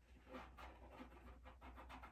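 Near silence, with a few faint soft rustles.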